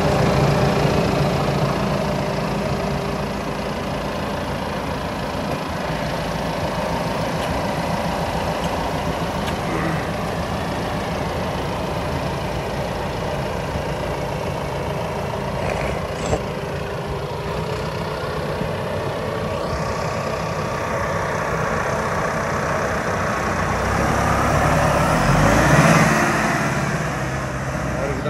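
Deutz-Fahr 6135 tractor's four-cylinder diesel engine running, loud at first close by, then driving along the road and passing back by, its sound swelling and bending in pitch to a peak about three seconds before the end.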